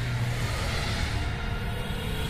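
Low, steady rumbling drone of film-trailer sound design and score, with a sustained low hum underneath.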